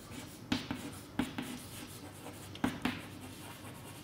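Chalk writing on a blackboard: faint scratching strokes, with several sharp taps as the chalk strikes the board.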